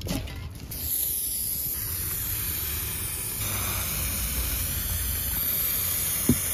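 Aerosol primer spray can hissing in one long continuous burst, starting about a second in. The can is starting to run low on pressure.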